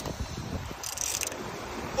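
Large conventional fishing reel being cranked against the pull of a big hooked fish, its gears and mechanism running, with a brief higher-pitched stretch about a second in. Wind noise on the microphone.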